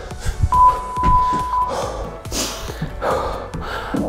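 An interval timer's single long beep, one steady high tone of a little over a second, marking the end of a work interval, over background music.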